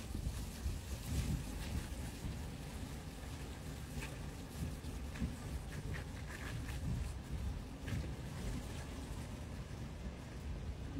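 Steady low rumble of vehicle road noise and wind, with a few faint ticks.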